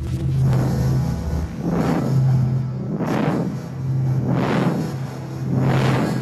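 Dark, ominous soundtrack music: a steady low drone with swelling whooshes that rise and fade a little more than once a second.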